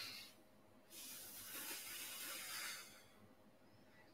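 Faint breathing of a man doing an abdominal exercise: a short breath at the start, then a long, breathy exhale of about two seconds, drawn out as the legs extend.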